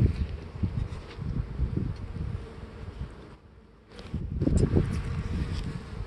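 Honey bees buzzing as they fly around an open hive. The buzzing wavers up and down, fades briefly a little past halfway, then comes back.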